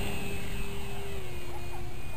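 HobbyZone Super Cub RC plane's electric motor and propeller giving a steady whine as the plane climbs away after takeoff. The pitch drops slightly about a second in.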